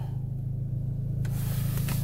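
APR Stage 2-tuned Audi A3's engine idling steadily, heard from inside the cabin; the engine is only partly warmed up. A light hiss joins about a second in.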